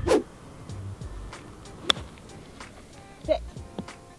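A golf shot played out of a sand bunker: one sharp strike of the club about two seconds in, over quiet background music.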